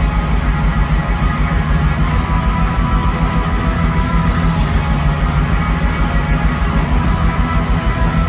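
Pagan black metal band playing live: distorted electric guitars over fast, steady drumming, with no vocals.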